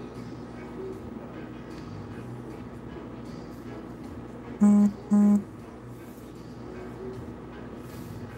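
Two short, loud electronic beeps about half a second apart, low-pitched, over steady background music.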